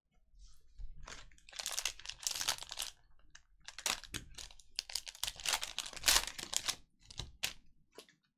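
Plastic foil wrapper of a trading-card pack crinkling and tearing as it is ripped open by hand, a run of irregular crackles.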